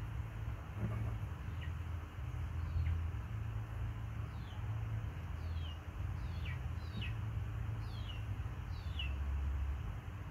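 Birds chirping: a run of short high chirps, each falling in pitch, about eight of them spread over several seconds, over a steady low rumble.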